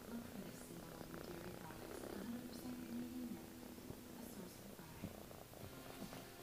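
A tabby kitten purring faintly and steadily while being stroked.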